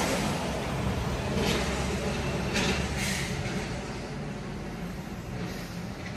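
A road vehicle's low engine rumble passing in the street, fading steadily as it moves away, with a few faint brief hisses in the first half.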